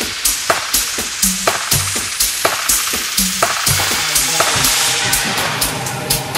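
Deep dub electronic dance track: a steady kick drum about twice a second with short bass notes, under a hissing, crackly noise layer. About four seconds in, the hiss thickens and a sustained chord enters.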